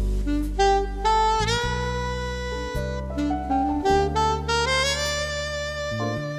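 Slow, jazzy orchestral film music: a solo trumpet plays a legato melody over sustained bass and chords, bending into one note about a second and a half in.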